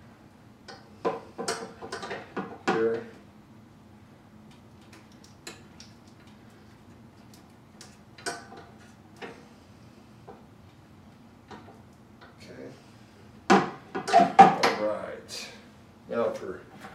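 Scattered clicks and knocks of hands twisting a wire nut onto black wires inside a light-fixture housing, with a louder cluster of knocks and rattles near the end.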